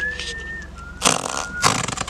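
Gas escaping from a mare's rectum around the veterinarian's gloved arm during rectal palpation: a thin whistle, then two hissing rushes of air, the first about a second in.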